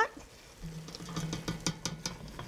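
A wooden spoon stirring diced tomatoes into a thick chili sauce in an enameled cast-iron pot: a run of light clicks and scrapes starting about half a second in.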